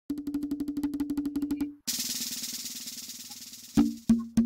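Percussion music: a fast roll of pitched drum strokes for under two seconds, then a hissing rattle roll over quieter drum pulses, ending with a couple of loud single drum strikes.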